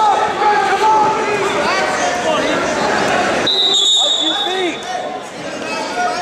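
Several voices of coaches and spectators shouting over each other beside a wrestling mat, and a short referee's whistle blast about three and a half seconds in, stopping the action.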